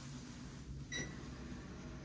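A TOTO toilet control panel gives one short, high electronic beep as a button is pressed, about halfway through. A soft hiss fades out before it.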